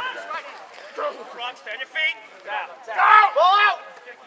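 Voices shouting and calling out at a rugby match, with two loud, drawn-out yells about three seconds in.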